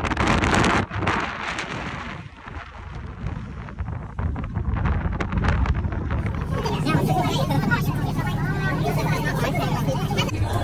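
Passengers chattering over a steady low engine drone, with wind rushing on the microphone in the first second or two. The chatter grows into a busy babble of voices from a little past halfway.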